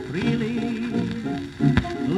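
A 1929 British dance band recording playing from a worn 78 rpm shellac record on a turntable, with sustained, wavering melody notes over the band. One sharp surface click from the worn disc comes near the end.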